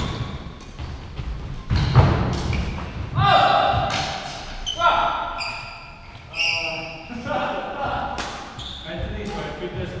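Thuds and sharp shoe squeaks of badminton players' feet on a wooden court floor, echoing in a large hall, with a loud thump about two seconds in.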